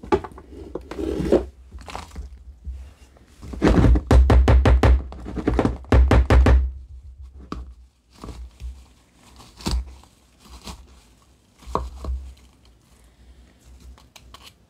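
A glass mason jar with a plastic funnel full of freeze-dried chicken pieces, tapped and shaken to settle the pieces down into the jar: two quick bursts of rapid knocks about four and six seconds in, then a few single knocks.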